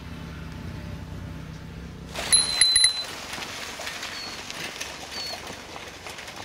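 A bicycle bell rung several times in quick succession, loud and metallic, about two seconds in, over a faint outdoor haze with a few brief high pips later. A low steady rumble comes before it.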